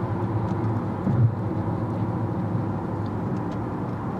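Steady low hum of a moving car's engine and road noise, heard from inside the cabin.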